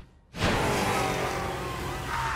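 Cartoon soundtrack: a vehicle sound effect over music, starting suddenly after a brief silence and holding steady.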